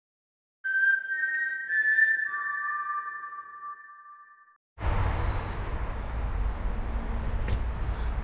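A short logo intro sting: a few steady, whistle-like electronic tones that step in pitch and fade out over about four seconds. About five seconds in, a steady low outdoor rumble cuts in.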